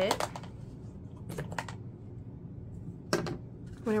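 A few light clicks and taps as a clear plastic note card box and the folded paper envelopes in it are handled, the loudest just after three seconds in.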